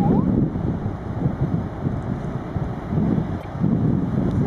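Wind buffeting the microphone in uneven gusts, over the wash of breaking surf.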